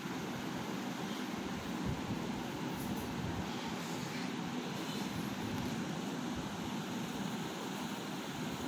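Steady background room noise: an even hiss with a faint low hum beneath it, unchanging throughout.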